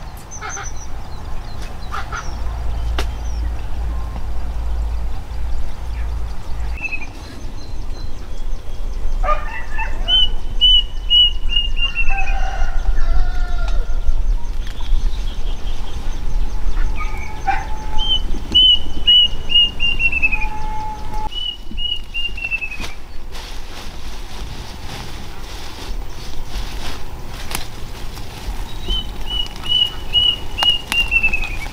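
Birds calling: a phrase of quick, high notes that drop in pitch at the end, repeated four times, with a few lower calls in between.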